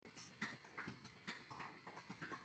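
Faint, irregular knocks and clicks, about two a second, picked up by an open microphone on a video call.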